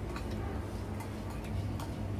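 A few light, irregular clicks of a metal spoon and fork against a plate of rice, over a steady low hum.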